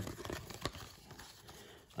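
Faint rustling and a few soft clicks of a torn card-pack wrapper and baseball cards being handled, mostly in the first second; the cards are stuck together and being pulled apart.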